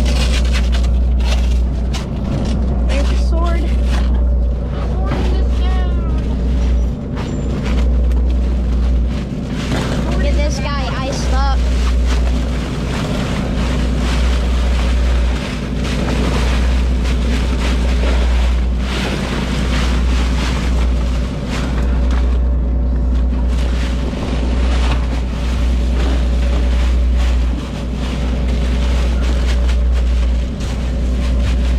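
A boat engine running steadily, with wind buffeting the microphone. Crushed ice rattles and clatters as it is poured over a swordfish in an insulated fish bag to chill the catch.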